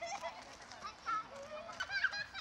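Several children squealing, calling and laughing at play, many high-pitched voices overlapping.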